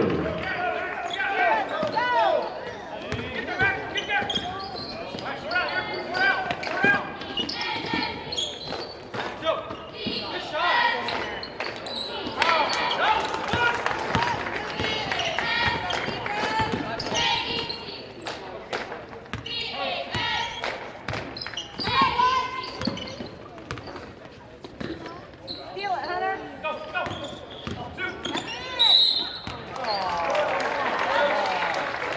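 Basketball being dribbled and bounced on a hardwood gym floor during play, with the scattered shouts and calls of players, coaches and spectators throughout.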